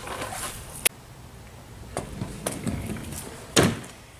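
A kick scooter knocking and clattering on a board on the ground. There are a few light clicks, then one loud clack near the end.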